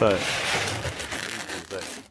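Peel ply being pulled off a cured layer of graphite-filled epoxy: a crinkling, tearing rustle that fades out over about a second and a half.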